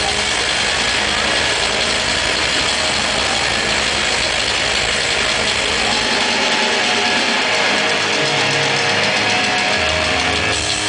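Rock concert heard from within the crowd: a loud, steady wash of crowd noise and sustained amplified band sound, with a held low note coming in near the end.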